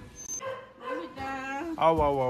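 A pet dog whining: a short rising cry about a second in, then a longer high-pitched whine.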